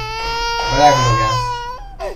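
A high-pitched, drawn-out crying wail held almost the whole time, under a man's low murmured voice.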